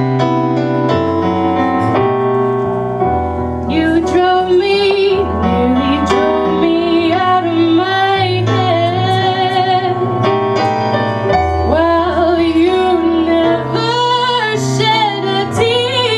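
A woman sings a slow jazz ballad with vibrato on held notes, over piano chords. The voice comes in strongly about four seconds in.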